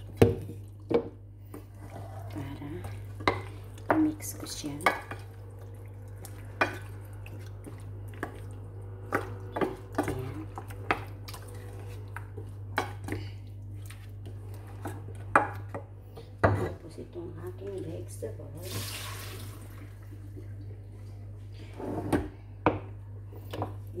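Wooden spoon knocking and scraping against a stainless steel pot while mixing raw chicken pieces into a thick herb-and-vegetable paste: irregular clicks and knocks, one every second or so, over a steady low hum.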